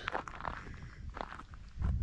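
Footsteps on gravel: a few steps, quiet and evenly spaced.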